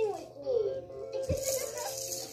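A baby's plastic rattle shaking from about a second in, with a low thump as it knocks against something, over music with melodic, voice-like tones.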